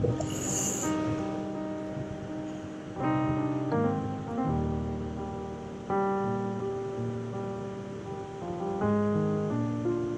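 Slow instrumental piano music, with chords changing every second or so, over the steady rush of river water. A brief hiss sounds right at the start.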